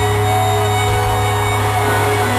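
Live rock band playing in an arena, holding a sustained chord over a steady low bass note, heard from the stands.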